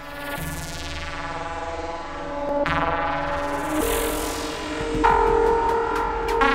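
Serge Paperface modular synthesizer playing a patch with added reverb: sustained buzzy electronic tones, with new pitches stepping in about every second or two and the sound growing louder.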